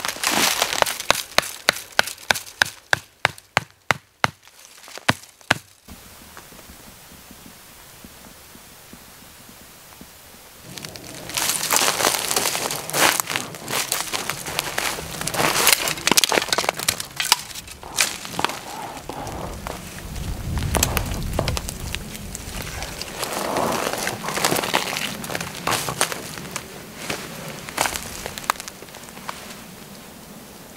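About a dozen sharp knocks in quick succession, roughly two to three a second, for the first several seconds. After a short lull comes a long stretch of irregular rustling and crackling from pine branches and a stiff oilcloth tarp as bank line is tied up to an overhead branch to lift the sagging tarp.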